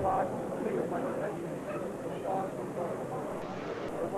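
Several people talking at once, with voices overlapping in steady background chatter.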